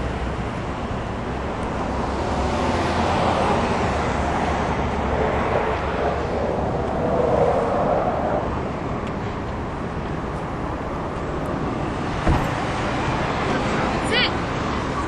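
Outdoor road traffic noise with a vehicle going past, swelling and fading over several seconds, and a single thump near the end.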